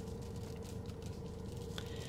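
Quiet car cabin: a steady low hum with a faint click near the end.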